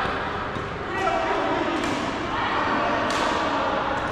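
Badminton rackets striking shuttlecocks: three sharp hits, the loudest about three seconds in, over constant background chatter of players in a large gym.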